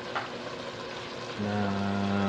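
Pork and vegetables simmering in broth in an aluminium pot, a soft steady sizzle with a small click just after the start. About one and a half seconds in, a man's voice holds a long, level hum.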